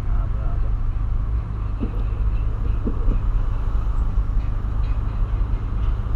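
Steady low rumble of engine and road noise heard inside the cabin of a 2008 Volkswagen Polo Sedan driving in city traffic.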